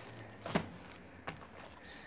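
Faint handling noise as a plastic bag is pulled off a rolled tool pouch and the pouch is set down on a padded moving blanket: two soft taps, one about half a second in and a lighter one just over a second in.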